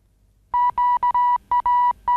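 Electronic beeps, all on one steady pitch, in a rhythmic pattern of short and longer tones, starting about half a second in.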